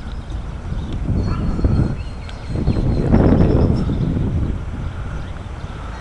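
Wind and handling noise on a camcorder microphone: a low rumble that swells about a second in and again from about two and a half seconds, loudest around three seconds.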